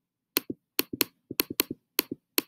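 Several quick clicks of a computer pointer button, each a sharp press followed by a softer release, clicking through the pages of an online storybook.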